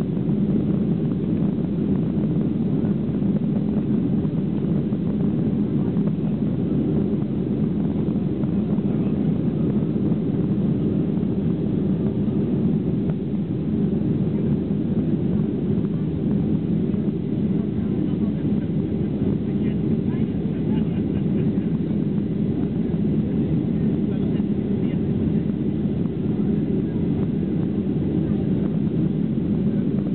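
Steady low cabin noise of a Boeing 737-800 in its climb after take-off: its two CFM56-7B turbofan engines and the rush of air past the fuselage, heard inside the cabin.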